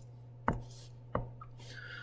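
Two short, sharp clicks about two-thirds of a second apart over a steady low hum.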